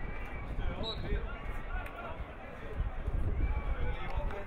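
Indistinct shouts and calls from several football players and people around the pitch, overlapping, over a constant low rumble.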